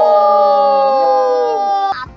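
Several voices shouting one long, drawn-out "yes" together as a cheer, held loudly and sliding slightly down in pitch, then cut off abruptly near the end.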